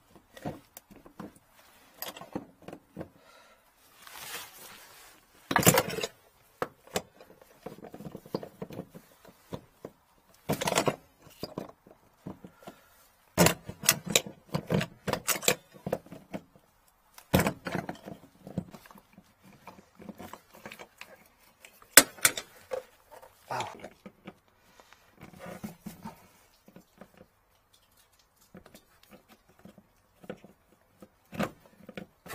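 Handling noise from work on a vehicle's fuel pump unit in the tank access hatch: irregular clicks, clinks and short rattles of metal and plastic parts and pliers, with a few sharper clacks.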